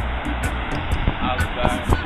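Wind buffeting the camera microphone outdoors, a steady low rumble and hiss, with faint voices in the background.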